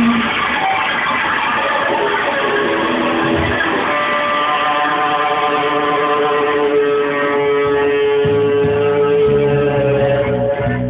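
Rock band playing live, an instrumental passage without vocals led by electric guitar. About four seconds in, a long note is held over the band, and the low end fills out near the end.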